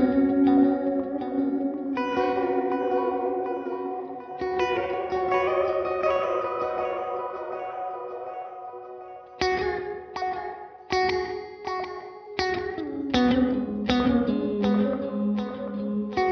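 Friedman Vintage S electric guitar played through a KMA Machines Cirrus delay and reverb pedal. Sustained chords ring out with long reverb tails. From about nine seconds in comes a run of short picked chords and notes, each trailed by repeating echoes.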